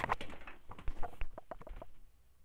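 Handling and movement noise as a person gets up out of a gaming chair: an irregular run of sharp clicks and knocks over rustling, which dies away at the end.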